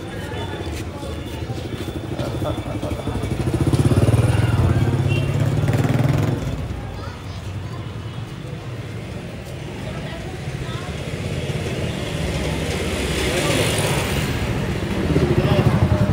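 Street sound in a narrow market lane: a motorbike engine runs past, loudest from about four to six seconds in and again near the end, over background chatter.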